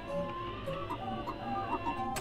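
Astromech droid R3-S6 replying in a rapid string of short electronic beeps and warbling chirps.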